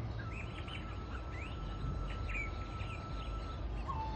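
Forest ambience of many small birds chirping and twittering in quick short calls, over a low steady rumble. A single long, steady high tone holds through most of it.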